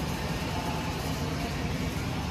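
Steady room noise with a low rumble and a faint hiss above it, even throughout, with no engine running and no distinct events.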